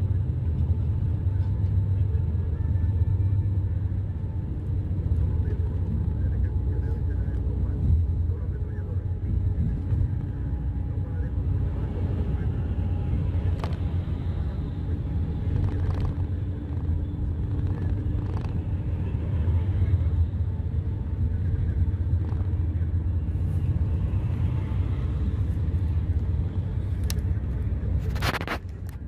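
Steady low road rumble of a vehicle travelling at highway speed, heard from inside the cabin: engine and tyre noise through the window glass.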